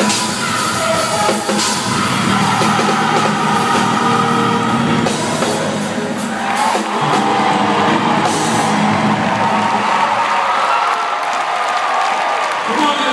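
Gospel choir singing with a backing band, with whoops among the voices. About seven seconds in the band's low end drops away and the voices carry on.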